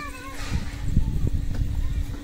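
Wind buffeting the microphone of a slowly moving motorbike, an uneven low rumble, over a steady low hum.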